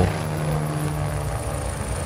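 Military helicopter flying low overhead, a steady low drone of rotor and engine.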